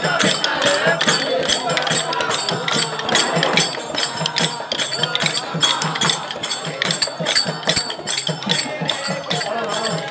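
A group singing a devotional bhajan to a steady rhythm of sharp clicks and jingles from hand percussion.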